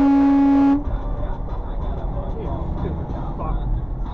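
A vehicle horn sounding one long steady blast that cuts off abruptly about a second in. Then steady low road and engine rumble inside the truck cab.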